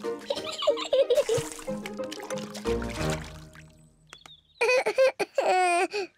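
Light cartoon background music, with a low thud about halfway through, followed near the end by a child's giggling.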